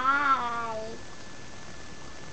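A long, drawn-out, sing-song "bye" in a high voice, lasting about a second and trailing off. After it there is only a steady hiss with a faint thin high whine.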